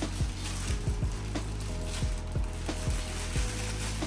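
A thin plastic packaging bag crinkling and rustling, with scattered light clicks, as an aquarium egg tumbler is pulled out of it, over soft background music.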